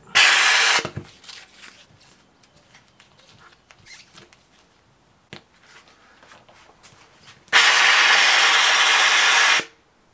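Handheld McCulloch steam cleaner hissing as steam is released through its cloth-wrapped nozzle onto an old vinyl decal to soften it for peeling. There is a short burst at the start and a longer one of about two seconds near the end, with faint scraping and a click in the quiet between.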